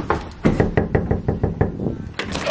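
Knuckles knocking rapidly on an apartment door, a quick run of about eight knocks a second starting about half a second in.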